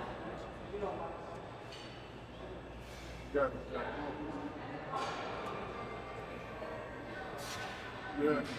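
Faint voices in a large gym, a few short spoken words over steady room noise.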